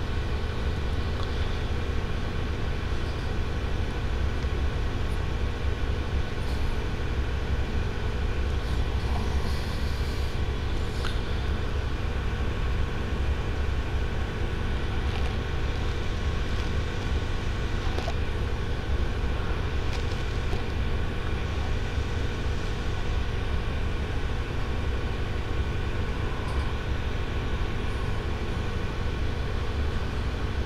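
Steady low rumble with a constant, unchanging machine-like hum.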